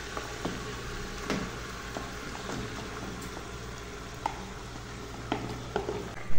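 Chunks of raw beef chuck going into a hot aluminium pressure cooker of vegetables and being stirred with a silicone spatula: a steady sizzle, with light knocks and scrapes of the spatula against the pot scattered throughout.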